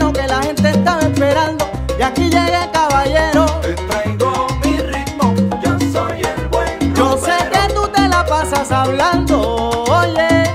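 Salsa music from a vibraphone-led sextet in an instrumental stretch without singing, with a steady, repeating low rhythmic pattern under dense percussion and melodic lines.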